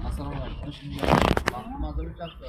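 Several people's voices talking, with a brief loud rustle about a second in.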